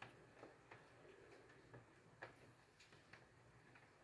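Near silence: room tone with a few faint, irregular ticks, the clearest about two seconds in.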